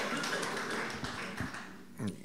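A conference audience laughing and murmuring, with a few soft taps in the room noise.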